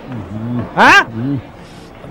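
A man's voice: low muttered sounds, then a short loud high-pitched cry about a second in that rises and falls in pitch.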